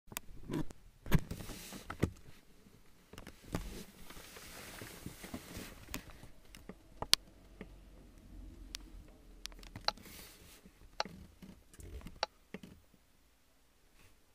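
Scattered sharp clicks and knocks with short stretches of rustling, from handling inside a parked car's cabin; the loudest clicks come about a second in, at two seconds and near seven seconds.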